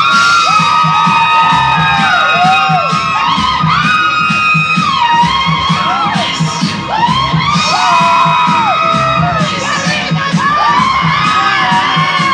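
A club crowd screaming and cheering over loud dance music with a steady beat. Many high-pitched screams rise and fall over one another.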